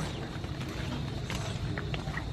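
Steady low outdoor background noise with faint rustling steps through garden vegetation on a dirt path.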